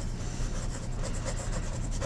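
Medium steel nib of a Penbbs 355 fountain pen writing in cursive on paper: the nib rubbing and scratching across the page as a word is written.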